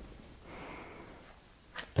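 A faint breath through the nose, a soft hiss lasting about a second, followed by a small click just before speech resumes.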